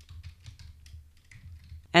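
Computer keyboard being typed on: a quick run of quiet keystrokes entering a line of code ("End If"), over a faint low hum.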